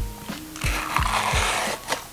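A small plastic sachet crinkling and tearing open for about a second, over background music with a steady beat.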